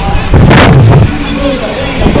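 Wind buffeting the microphone, a steady low rumble with one loud, sudden blast about half a second in.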